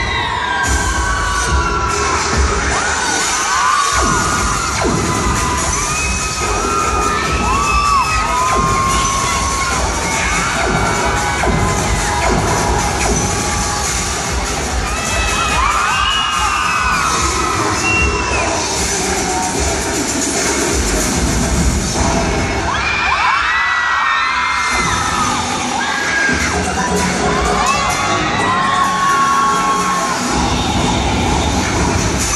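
Crowd cheering and shouting throughout a pom dance routine, with many high-pitched screams and whoops rising and falling, over the routine's dance music.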